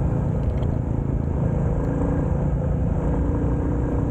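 A 350 cc motorcycle engine running steadily at cruising speed, with wind and road noise over it.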